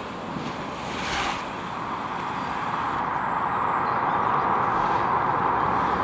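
Wind blowing, a steady rushing noise that slowly grows louder.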